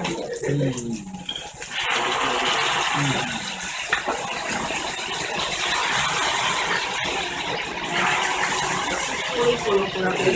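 Sauce sizzling hard on two hot iron plates under hamburg steaks: a steady hissing sizzle that starts about two seconds in.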